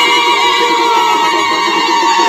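A crowd's loud, overlapping high-pitched voices, with cries that glide up and down, over a steady held tone.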